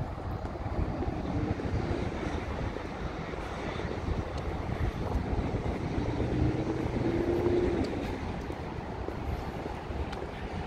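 Outdoor traffic rumble with a passing engine drone, whose tone is plainest and rises slightly about six to eight seconds in.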